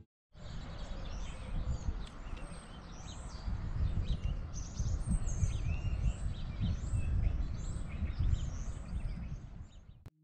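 Several small birds chirping and calling in short, quick notes, over a low, uneven rumble of outdoor background noise.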